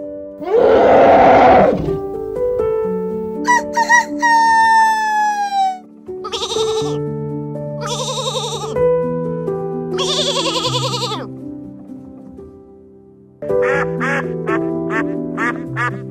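Soft background music with animal calls laid over it: a loud rough call about a second in and a long falling call, then a sheep bleating three times, and near the end a duck quacking in a quick run of short calls.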